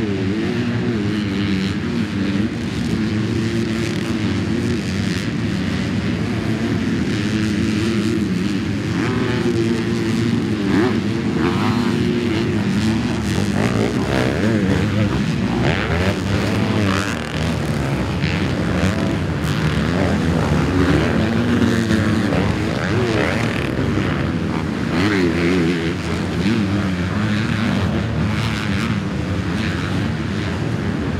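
Four-stroke Honda motocross bike engine revving hard and then backing off, its pitch rising and falling over and over through gear changes and throttle blips, with other dirt bikes on the track mixed in.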